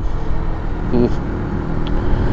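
Brixton Rayburn 125 motorcycle's single-cylinder engine running at a steady note while it is ridden along at road speed.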